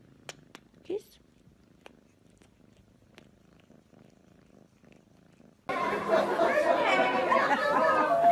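A domestic cat purring faintly close up, with a few soft clicks. About two-thirds of the way through it cuts suddenly to loud chatter of several voices.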